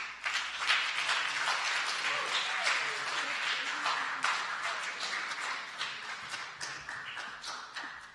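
Audience applauding, the clapping dying away over the last few seconds.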